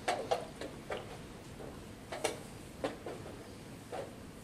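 Irregular sharp clicks and knocks, some in quick pairs, from wooden chess pieces being set down and chess-clock buttons being pressed at nearby boards.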